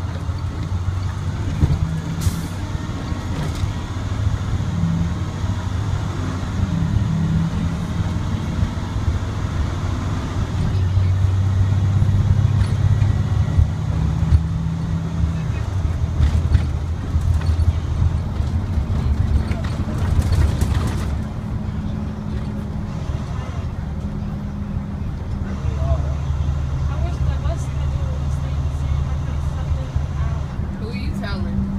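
International DT466E diesel engine of an IC CE300 school bus heard from the driver's seat while the bus pulls away and drives on, its pitch rising and falling in steps several times.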